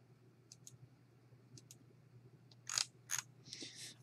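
Faint computer mouse clicks in quick pairs, double-clicks, then two louder sharp clicks near the end, over a faint steady low hum. A short breathy hiss comes just before speech.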